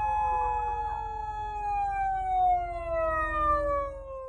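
Japanese police patrol car's siren wailing in one long tone that slides slowly down in pitch, over a low rumble of traffic.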